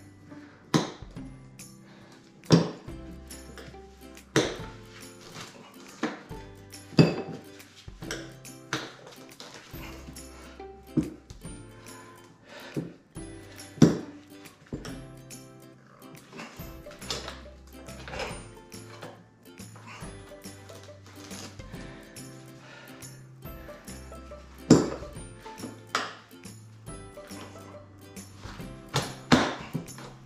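Background music, with irregular sharp metallic clinks and knocks of tyre levers against a spoked motorcycle wheel rim as a tyre is worked onto it.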